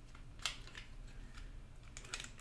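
Plastic handling of a waterproof phone pouch and its snap-clip closure, with one sharp click about half a second in and a few fainter clicks.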